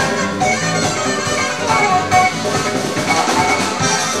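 Live band music with a saxophone playing over electric guitar and a rhythm section.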